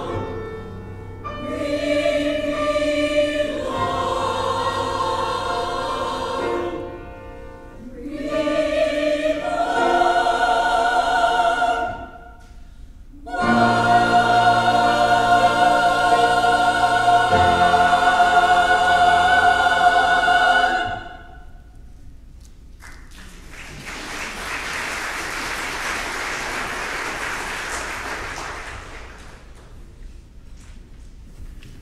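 Church choir singing an anthem in phrases, ending on a long held final chord. After a brief pause the congregation applauds for several seconds.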